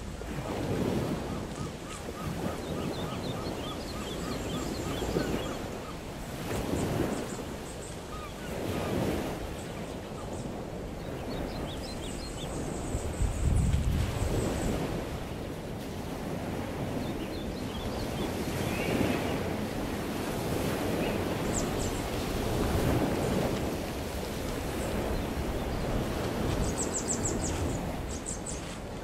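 Wind gusting over the microphone, a rough rushing noise that surges and eases every few seconds.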